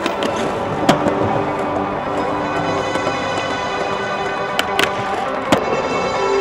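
Music playing, with a few sharp skateboard clacks on concrete over it: one about a second in and a quick cluster of three near the end.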